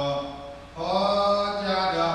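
A Buddhist monk chanting paritta verses into a handheld microphone in long held notes. He breaks off briefly a little before the middle, then resumes on a higher held note.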